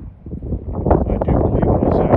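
Wind buffeting the microphone, a loud rumbling rush that builds about half a second in and keeps gusting.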